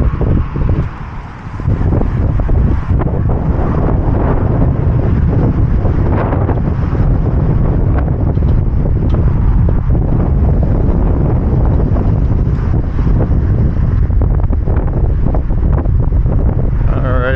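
Wind buffeting the camera's microphone, a loud, steady low rumble that eases briefly about a second in.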